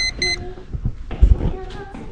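Two short, high electronic beeps in quick succession, followed by clothes and objects being handled and a low thump just over a second in.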